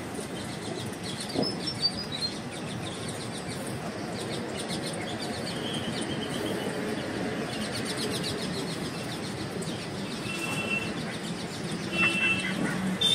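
Rose-ringed parakeet giving a few faint short chirps and whistles over steady background noise, with a couple of light knocks about one and a half to two seconds in.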